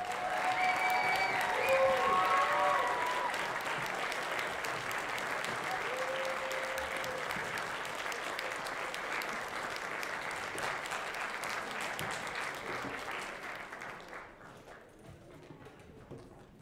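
Audience applauding a school jazz band at the end of a piece, with a few whoops rising over the clapping in the first few seconds. The applause fades away near the end.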